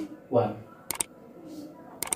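Two quick, sharp mouse-click sound effects about a second in, the click of a subscribe-button animation.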